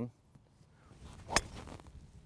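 A golf club striking a ball on a full swing: one sharp click a little past the middle, with quiet background around it.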